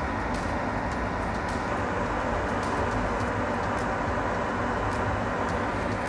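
Steady fan-like noise with a faint low hum running under it, and a few faint light ticks.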